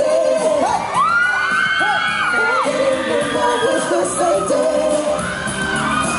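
Live pop music with male singers performing on stage, loud and steady. Over it, high-pitched screams and whoops rise from the audience, first about a second in and again near the end.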